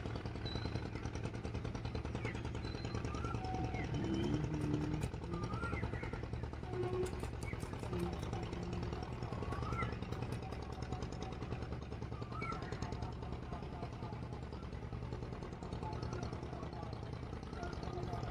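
A river ferry boat's diesel engine running steadily with a fast, even chug.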